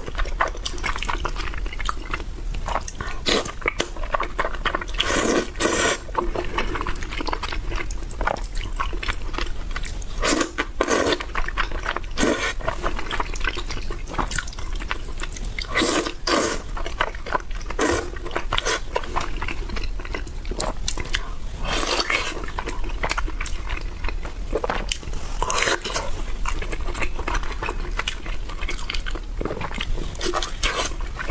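Close-miked eating: wet chewing and mouth smacking on saucy braised pork and glass noodles, with a louder slurp every few seconds as noodles and sauce are sucked in.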